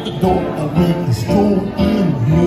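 Grand piano played live, an instrumental passage of a song's accompaniment.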